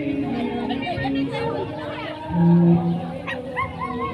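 Several people talking at once in indistinct chatter, with one voice louder about halfway through and a few short up-and-down calls near the end.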